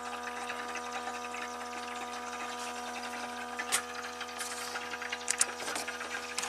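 Small electric air pump of an Autoline Pro Ventus portable smoke machine running steadily in smoke mode, a constant electric hum, with a few faint clicks about four seconds in and near the end. It is pumping into a pressure transducer, holding a regulated pressure of about 2 PSI.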